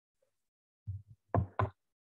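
Four quick knocks close to the microphone, about a second in: two softer ones, then two louder ones in quick succession.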